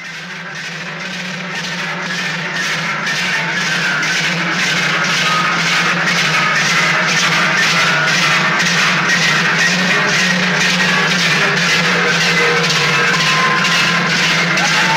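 Many large cowbells strapped to the backs of marchers clanging together in a steady rhythm, about two to three strokes a second in time with their steps, growing louder over the first few seconds.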